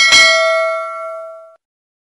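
Notification-bell ding sound effect from a subscribe-button animation: one bright chime of several tones that rings and fades out over about a second and a half.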